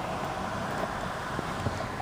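Steady background hiss inside a pickup truck's cab, with a few faint clicks.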